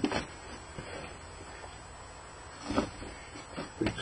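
Hands spreading flake soil, fermented beech sawdust mixed with rotten leaves, over beech pellets in a plastic box: faint, soft rustling and scraping of the loose substrate, with a couple of brief louder rustles.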